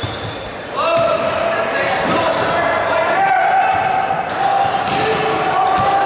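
A volleyball rally in a gymnasium: sharp hits of the ball, about six times, over voices calling out with long held cries, all echoing in the hall.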